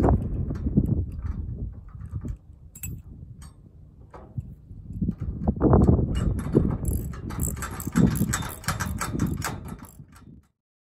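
Hand wrench tightening the nuts of a U-bolt on a steel squeeze-chute frame: irregular metallic clicks and clanks, sparse through the first half and quicker and louder from about halfway in, over a low rumble.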